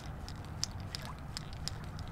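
Walk-the-dog topwater plug being twitched across the surface. Light, irregular clicks and small splashes come about four or five a second from its rattle beads and the lure slapping side to side, over a low steady rumble.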